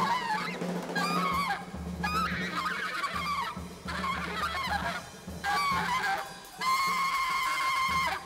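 Alto saxophone solo in free-jazz style: short squealing, honking phrases that bend in pitch, broken by brief pauses, ending in a long held high note. A steady low drone and bass notes sound underneath.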